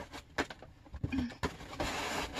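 Cardboard boxes being handled: a few light knocks and taps, the sharpest just under half a second in, then a rustling scrape of cardboard sliding near the end as an inner box is pulled out of its outer box.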